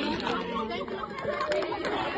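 Several people chatting and talking over one another, with no clear words.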